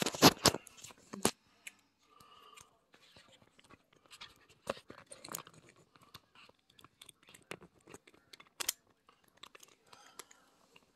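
Handling noise from a phone being moved around close up: a quick run of loud knocks and rubs right at the start, another knock about a second later, then scattered small clicks and rustles.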